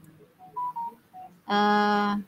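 A few short, faint beep-like tones, then a woman's long, steady-pitched hesitation sound, a held "uhh", as she searches for her next words.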